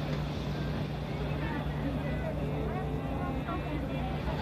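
A motor on a food truck running with a steady low hum, under faint chatter of people nearby.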